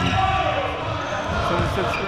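A basketball bouncing on a court during play, with players' voices faint in the background.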